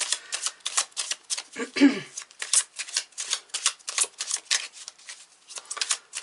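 A deck of tarot cards being shuffled by hand, a quick steady run of crisp card flicks and clicks, broken by a brief low hum of voice about two seconds in.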